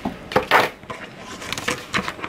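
Hands handling a clear plastic ruler on a cutting mat: a light knock, then a brief scrape about half a second in, followed by a few faint clicks.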